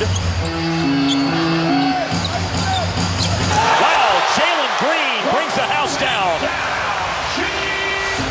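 Live basketball arena sound: music with a stepped low bass line plays for the first few seconds and briefly again near the end, over crowd voices, with a basketball bouncing on the hardwood court.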